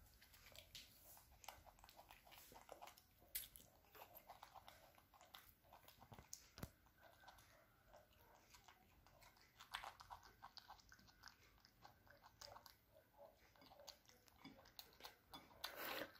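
Faint, irregular crunching and chewing of a baby monkey biting into raw cauliflower florets, a scatter of small crisp clicks with a few sharper bites.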